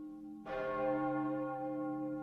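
A large bell tolling: a fresh strike about half a second in rings out over the lingering tones of earlier strikes.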